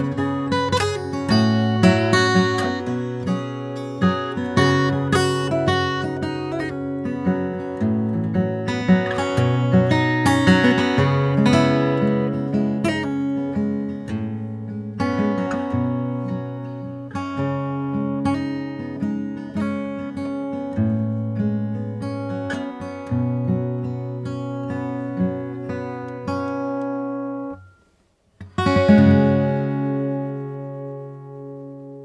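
Steel-string acoustic guitar fingerpicked with no singing: a melody of plucked notes over low bass notes. Near the end the sound cuts out completely for about half a second and comes back with a loud strum.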